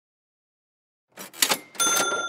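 Edited-in transition sound effect: silence, then a quick run of sharp clacks about a second in, followed by a bright bell-like ding that keeps ringing.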